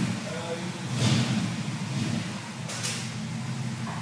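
Chevrolet 283 cubic-inch small-block V8 idling with a steady low rumble.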